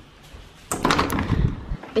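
A glazed plastic-framed door being opened: a sudden rush of noise with a low thud, starting under a second in and lasting about a second.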